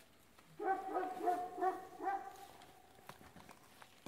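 A small animal's high-pitched calls: a quick run of short, arching notes, about four a second, starting about half a second in and lasting about a second and a half, followed by faint light clicks.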